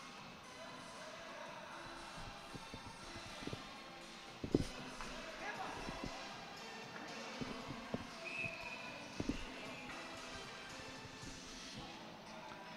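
Ice-rink arena ambience during a stoppage in play: a low murmur from the hall with a few sharp knocks on the ice. The loudest knock comes about four and a half seconds in.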